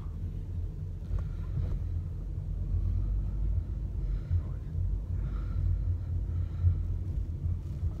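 Steady low engine and road rumble heard inside the cabin of a moving car.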